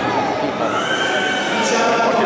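A single voice drawing out one long note that rises and then falls, over the murmur of many people talking.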